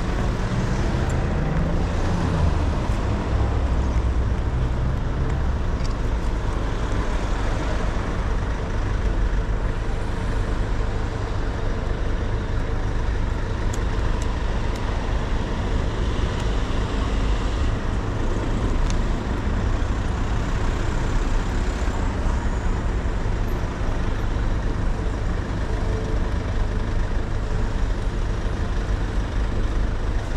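City road traffic at an intersection: a steady low rumble of cars passing and idling, with one vehicle's engine rising in pitch as it pulls away in the first few seconds.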